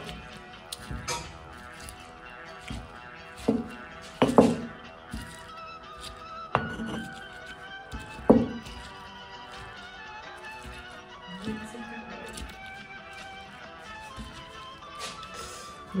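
Background music with held notes, over several sharp, irregularly spaced knocks in the first half of a stone pestle pounding onions and chilies in a volcanic-stone molcajete.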